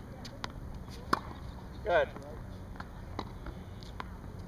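Tennis ball struck by a racket on a forehand, a single sharp pop about a second in, with a few fainter knocks of the ball before and after it.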